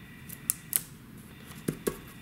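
Fingers pressing and rubbing a sticker down onto a paper card on a tabletop, making a few light clicks and taps, the two loudest close together near the end.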